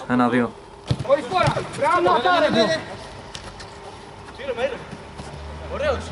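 Men's voices calling out for about two seconds, with a single sharp thud about a second in.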